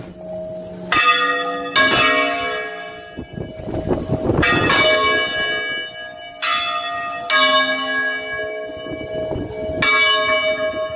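Church bells swung full circle by electric motors, in the Valencian general swinging (volteig general). The clappers strike at irregular intervals, several times, and each strike rings on with long overtones that overlap the next. The loudest strikes come about a second in and about seven seconds in.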